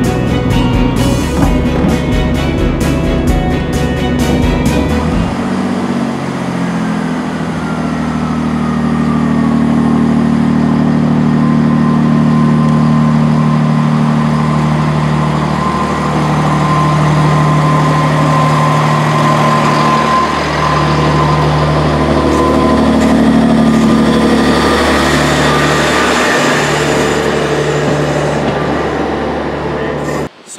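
Class 158 diesel multiple unit's underfloor diesel engines running steadily as the train pulls out of the platform, with a whine that falls in pitch and then holds. The first few seconds are music with a steady beat.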